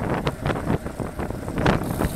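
Wind buffeting a bicycle-mounted camera's microphone at about 37 km/h, coming in irregular gusty surges, over the hiss of the bike's tyres on asphalt.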